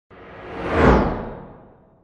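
Whoosh sound effect of a logo reveal, swelling to a peak just under a second in with a deep rumble beneath it, then fading away.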